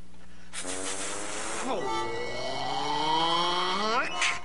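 A cartoon character's long, strained, raspy voice as he struggles to get out a word he has been told to say, starting about half a second in; the pitch sinks slightly and then climbs steeply near the end. Soft background music runs underneath.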